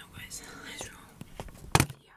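Faint whispering voice, then a single loud knock near the end as the handheld phone is handled.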